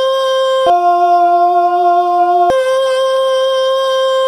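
Male voices singing long held vowel notes, one clear note at a time. The pitch drops abruptly to a lower note under a second in and jumps back up to the first note about two and a half seconds in.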